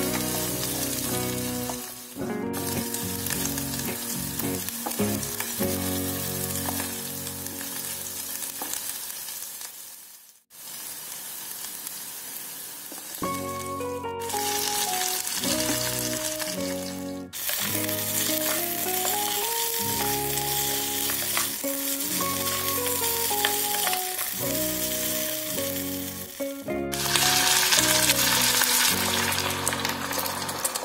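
Chopped garlic, shallots and spring onion sizzling in hot oil in a small electric pot while being stirred, later with boiled chicken feet in the pot. The sizzle drops out briefly about ten seconds in and grows louder near the end, with background music playing over it.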